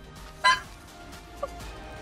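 Online video slot's background music, with a loud, bright chime sound effect about half a second in and a shorter, softer tone about a second later.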